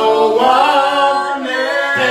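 Men's voices singing a gospel worship song, largely unaccompanied.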